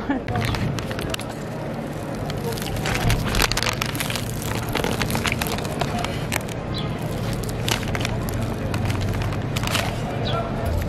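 Crisp, flaky pastry (Afyon bükmesi) crackling and its paper bag crinkling as hands tear it open: many short, sharp crackles, irregularly spaced, over steady outdoor background noise.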